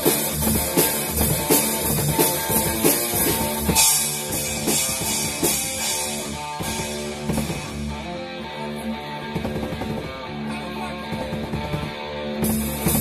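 An electric guitar playing lead over a drum kit in a live rock jam. Regular cymbal hits keep time at first, with a cymbal wash about four seconds in. Near the end the cymbals drop out for a few seconds while the guitar and drums carry on more quietly.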